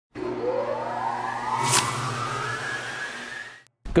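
Intro logo sound effect: a synthetic whoosh rising slowly in pitch over a steady low drone, with one sharp hit a little under two seconds in. It fades out just before the end.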